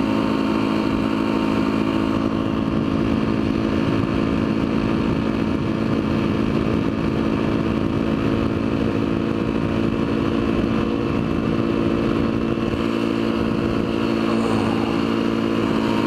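Yamaha WR450F dirt bike's single-cylinder four-stroke engine running at a steady cruising speed on the highway, holding an even pitch throughout, with wind and road rush on the helmet microphone.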